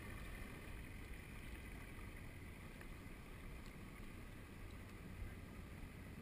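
Sea kayak being paddled through calm water: faint water sounds from the paddle and hull under a steady low rumble, with a faint steady hum.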